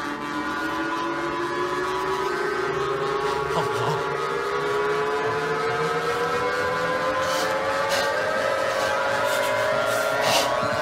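Science-fiction ray-machine sound effect: a droning electronic tone with many overtones that rises slowly and evenly in pitch throughout, as the disintegrator beam bombards the man in the chair.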